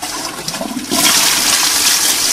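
Toilet flushing: the rush of water starts suddenly and gets louder about a second in, then runs on steadily. It is a flush test with ping pong balls in the bowl, which the flush fails to carry away.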